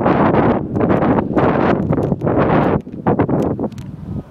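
Wind buffeting a phone's microphone in loud, uneven gusts that break off and return several times.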